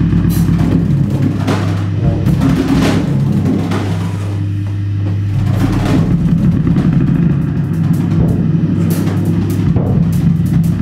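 Free-improvised live playing on a drum kit, with scattered drum and cymbal strokes over a held low drone from electric bass and electronics.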